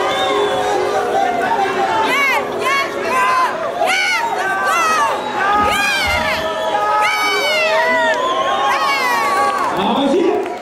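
Crowd of spectators cheering, full of many overlapping high whoops and shouts that rise and fall in pitch.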